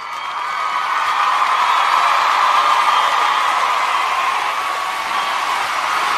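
Crowd cheering and applause, likely a canned outro sound effect. It swells over the first second or so and then holds steady and loud.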